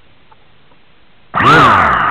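A person growling 'grrrr' loudly, the pitch rising and then falling, starting about one and a half seconds in.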